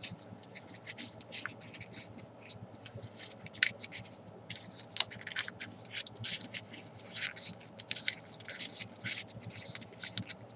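Folded origami paper crinkling and rustling under the fingers in many short, irregular scratches, with a few sharper crackles, as the center of a paper rose is pressed down and shaped.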